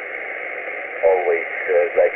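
Shortwave single-sideband radio reception through an Icom IC-703 transceiver's speaker. Steady band-limited static hiss, then a distant station's voice comes in about a second in, with the thin, narrow sound of SSB.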